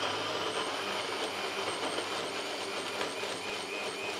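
NutriBullet personal blender motor running steadily as it purées a thick mix of roasted tomatoes, peppers and onion, with a high whine that wavers slightly throughout.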